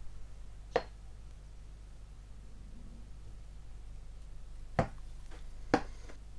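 Three sharp light clicks, one about a second in and two near the end, from small photo-etched brass parts being handled at a modelling bench, over a steady low hum.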